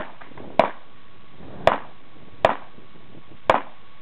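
Four single gunshots fired at an uneven pace, roughly one a second, during a timed practical-shooting stage.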